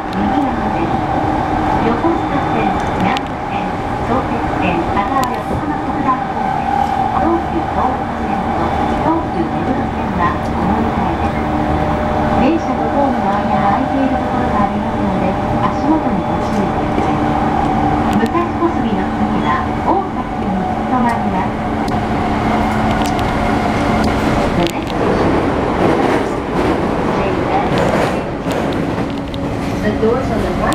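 Steady electrical hum inside an E231-series commuter train car, with people's voices over it.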